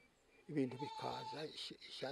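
An elderly man talking in a wavering voice, starting about half a second in after a brief pause.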